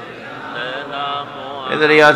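Soft chanting of an Islamic devotional refrain by men's voices, then a man's voice comes in loudly near the end.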